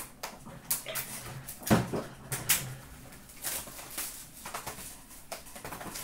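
Hockey card boxes, packs and cards being handled on a glass counter: wrappers crinkling, cardboard sliding and cards shuffled, with scattered taps and a thump about two seconds in.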